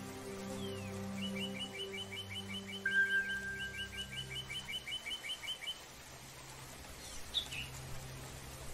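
Soft sustained spa-music chords that fade out midway, with recorded birdsong over them: a rapid trill of repeated chirps, about five a second, through the middle, a long steady whistled note about three seconds in, and a few short calls near the end.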